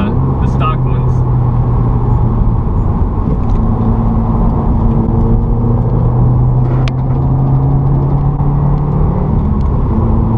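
Turbocharged flat-four engine and Nameless Performance cat-back exhaust of a 2015 Subaru WRX heard from inside the cabin at a steady cruise, over road and tyre noise. The engine note holds fairly level and steps up slightly about halfway in. There is a sharp click just before seven seconds.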